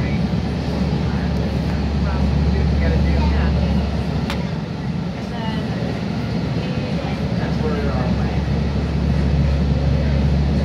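Steady low rumble and running noise inside a SMART diesel railcar travelling at speed, with a brief dip in level about halfway through.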